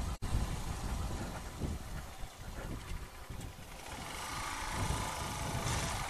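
Small Chinese-made motorcycle running while it is ridden slowly along a street, engine sound mixed with road and wind noise. The sound cuts out for an instant just after the start.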